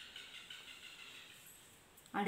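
Faint scratching of chalk writing on a blackboard, with a light tap as the chalk meets the board at the start.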